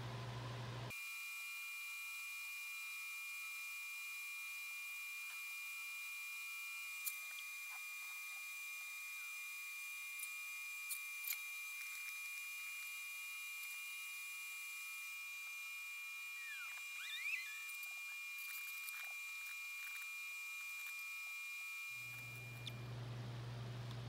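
Steady, faint, high-pitched whine from a Dell PowerEdge server's cooling fans as the machine reboots, with a few light clicks and a short gliding chirp about two-thirds of the way through.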